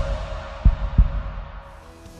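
Television programme theme music fading out, with a heartbeat-like double thump in the bass about two-thirds of a second in, then dying away to a low level near the end.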